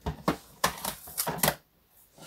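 A quick run of light, irregular clicks and taps, about seven in a second and a half, from drafting tools being handled on a work table, then the sound cuts off suddenly.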